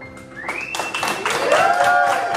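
Small audience breaking into applause as the song ends, clapping building from about half a second in, with a rising high cheer and then a whooping voice over the clapping.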